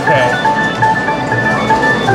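A tinny electronic arcade-game jingle of short, beeping melody notes, with a short laugh at the start.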